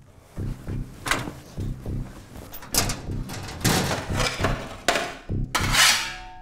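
Low pulsing suspense score, about two beats a second, under the knocks and rustles of people moving; the loudest is a longer scraping hiss near the end.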